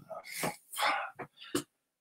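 A man clearing his throat in several short bursts.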